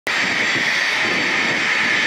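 A four-engined regional jet airliner's engines running with a steady whine as it rolls along the runway.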